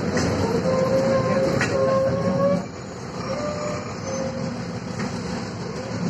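Cabin noise inside a Volvo 7000A articulated city bus on the move: steady engine and road rumble with a thin, slightly rising whine. About two and a half seconds in, the whine stops and the whole sound drops noticeably quieter.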